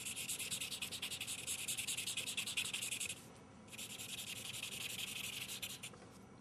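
Felt-tip marker scribbling on paper in rapid back-and-forth strokes as it shades in colour, with a short pause about halfway through before the strokes resume.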